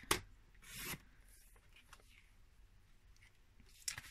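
Stampin' Trimmer paper trimmer cutting an adhesive sheet: a sharp click as the blade is pressed down, then a short scrape about half a second later as the cutting head slides along the rail. Faint handling ticks follow.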